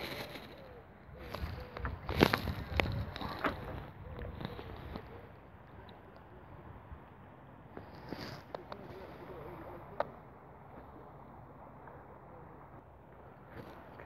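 Handling noises as an angler deals with his catch and tackle: a burst of knocks and rustles about two seconds in, then a single sharp click about ten seconds in, over a faint steady background.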